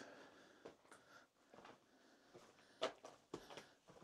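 Near silence in a small rocky cave, broken by a few faint short clicks and one sharper tick a little before three seconds in.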